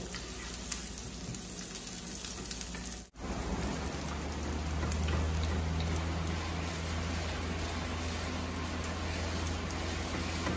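Chopped garlic and onion sizzling in hot oil in a frying pan while being stirred with a wooden spoon, a steady frying hiss. The sound cuts out for an instant about three seconds in, and a low hum runs under the sizzle after that.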